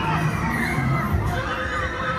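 Riders on a spinning Huss Flipper fairground ride screaming and shouting, many overlapping high-pitched cries rising and falling, over a steady low rumble.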